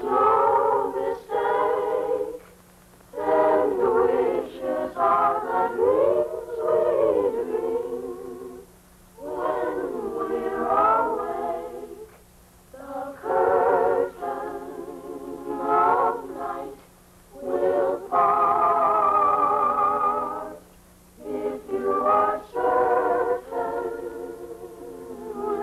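Children's choir singing unaccompanied, in phrases of held, wavering notes with short pauses for breath between them. A faint steady low hum runs underneath.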